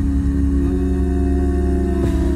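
A cappella vocal group holding one sustained chord over a deep, steady bass note, in a pause between sung lines of a slow country ballad.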